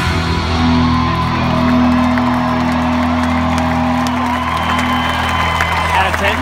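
Live country-rock band with electric guitars holding a long sustained final chord through a stadium PA, recorded from within the crowd. Audience whoops and cheers rise over it as the song ends.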